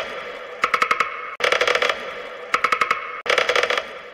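Rhythmic bursts of rapid metallic rattling, about one shake a second, each a quick run of clicks over a ringing jingle, sounding in a pause in the singing.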